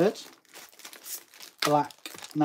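Clear plastic bag crinkling as it is handled and a card is slipped into it. A short bit of voice is heard at the very start and again about one and a half seconds in.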